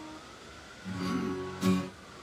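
Acoustic-electric guitar: a held note dies away, then a chord is strummed about a second in, followed by a sharper, louder strum near the end.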